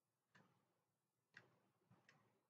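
Near silence with three faint, sharp clicks spaced about a second or less apart, from a computer mouse as the page is scrolled.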